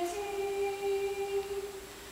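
Women's a cappella choir holding one long sustained note, which fades away near the end.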